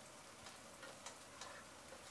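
Faint sizzling of fenugreek leaves, onions and spices frying in oil in a pot, with a few light ticks of a wooden spatula stirring.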